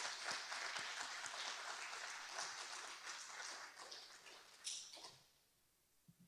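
Audience applauding, the clapping dying away about five seconds in, with one last single clap standing out just before it stops.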